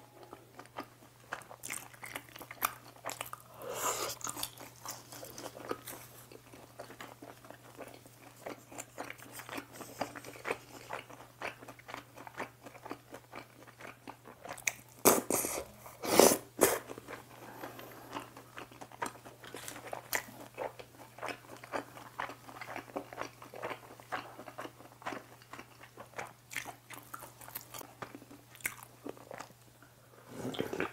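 Close-miked chewing and crunching of chapssal tangsuyuk (fried pork in glutinous-rice batter), with biting and small wet mouth sounds, and a few louder bursts about fifteen and sixteen seconds in.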